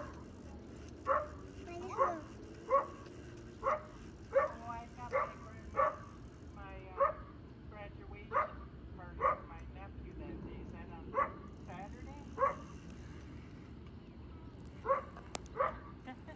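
A dog barking repeatedly in short, sharp barks, about one a second, then falling silent for a couple of seconds before two last barks near the end.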